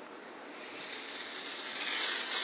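Aerosol can of Sally Hansen Airbrush Legs spray-on leg makeup spraying: a steady hiss that starts about half a second in and grows louder toward the end.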